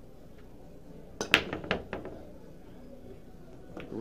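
10-ball break shot on a pool table: the cue strikes the cue ball, which smashes into the rack with one sharp crack, followed by a quick spatter of balls clicking against each other and the cushions, dying away within about a second. A well-timed break, with a sound the commentator really liked.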